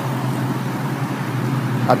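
A 1997 Mustang GT's 4.6-litre two-valve V8 idling steadily, heard through a Flowmaster Super 44 exhaust with the catalytic converters still fitted.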